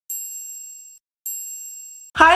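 Two high-pitched bell-like dings from a subscribe-button animation's sound effect, one at the start and one about a second later, each fading and then cut off abruptly.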